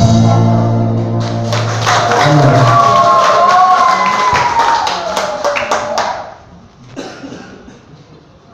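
A live band holds its final chord, which stops about a second and a half in. Audience applause follows, with one long cheer that holds and then falls in pitch, and it dies away about six seconds in.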